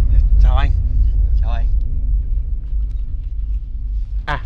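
A loud, steady low rumble that slowly eases, with two brief snatches of voices in the first two seconds.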